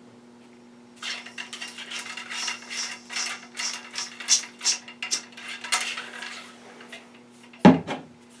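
Ramrod with a solvent-wet cleaning patch on its jag being run back and forth in a muzzleloader's bore, scrubbing out black-powder fouling: quick scraping strokes, about two to three a second, starting about a second in. A sharp knock comes near the end.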